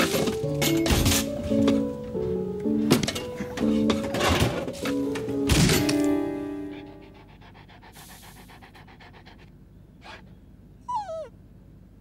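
Pots and pans clattering and banging as a frying pan is forced into a crammed kitchen cupboard, over light stepped music, for the first half. Then it goes quiet, and about eleven seconds in a dog gives a short, falling yelp.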